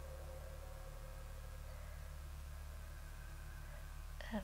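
Quiet room tone: a steady faint low hum with no distinct sounds.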